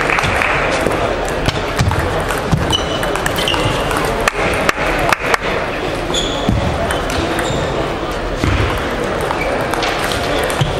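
Table tennis ball clicking off bats and table in quick runs of strikes, over the steady din of a busy sports hall full of voices and balls from other tables.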